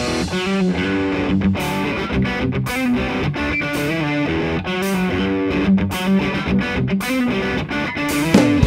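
Rock band recording in a guitar-led passage: distorted electric guitar playing sustained chords, with sharp accents about once a second.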